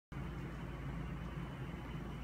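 Steady low hum with faint hiss: background room tone.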